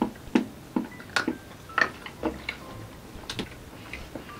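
Someone biting and chewing a piece of crisp dark chocolate: about seven short clicks at irregular intervals.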